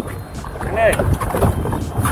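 Steady low wind and water noise on a small boat at sea, with a man saying one short word a little under a second in.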